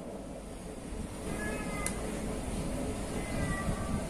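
An animal calling twice in short, high-pitched calls, about a second in and again about three seconds in, with a sharp click between, over a steady low room hum.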